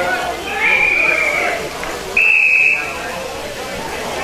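Football umpire's whistle blown twice, stopping play: two steady, shrill blasts about a second apart, the second louder, over players' and spectators' voices.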